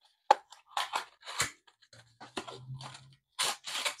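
A small card box being opened by hand: a sharp click early on, then scraping and rustling as a kraft paper bag of dried herbs is slid out, with two louder crinkles of the paper near the end.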